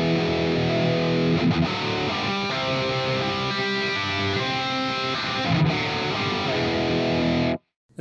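Electric guitar played through a Fractal Audio Axe-FX II modelling a Mesa Boogie Mark IIC++ amp, with a Dimension 1 chorus added, strumming full barre chords that ring out with a lot of clarity between the notes. The playing stops abruptly near the end.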